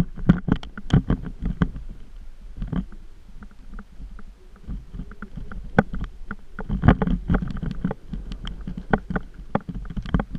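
Irregular knocks, clicks and rattles over a low rumble from moving along a rough dirt trail, bunched into rougher stretches near the start and about seven seconds in.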